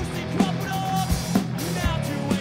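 Live punk rock band playing: a drum kit with bass drum and snare hits over electric guitar and bass guitar.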